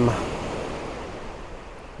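Small waves washing up a pebble beach, a steady rush of surf that fades gradually.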